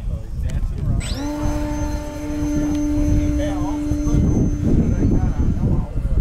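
Electric motor and propeller of a radio-controlled model aircraft spinning up about a second in to a steady hum with a thin high whine, then cutting out shortly before the end. Wind rumbles on the microphone throughout.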